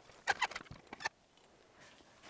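A few light clicks and knocks from a folding bicycle being handled and turned round on a table, in the first second, then near silence.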